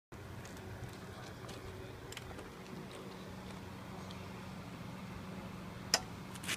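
Steady low background hum with a few faint clicks, then a single sharp click near the end as the pail of urethane roof coating is lifted by its wire bail handle over the spreader's hopper.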